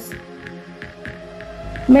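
Quiet background music with faint held tones over a low hum, and a deep low rumble swelling near the end.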